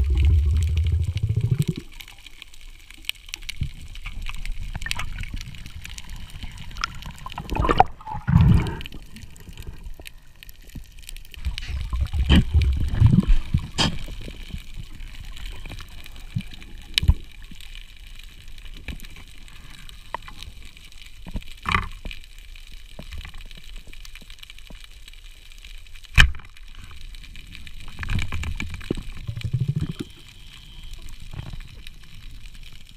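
A scuba diver's exhaled bubbles gurgling past an underwater camera in low bursts several seconds apart, with a few sharp clicks between them.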